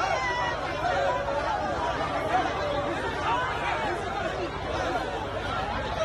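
A crowd of many people talking at once, a steady hubbub of overlapping voices with no one voice standing out.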